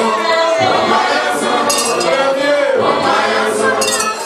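A choir of many voices singing a gospel song together in harmony. A short, sharp percussive stroke cuts through about every two seconds.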